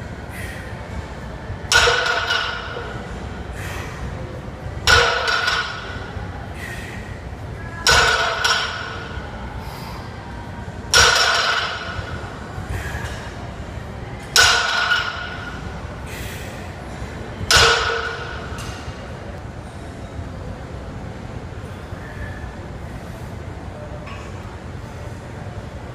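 A loaded barbell set down on the gym floor six times during deadlift reps, about every three seconds. Each touchdown is a sharp clank followed by a short metallic ring from the bar and plates.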